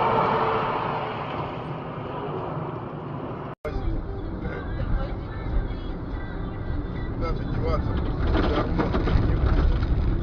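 Cabin noise of a car driving, recorded by a dash cam: steady engine and tyre noise. A sudden cut about three and a half seconds in switches to a deeper, louder road rumble from another car on a country road.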